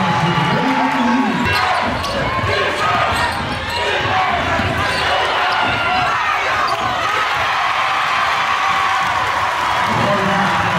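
Game sound in a basketball gym: many spectators shouting and talking over each other, with a basketball bouncing on the hardwood floor during play.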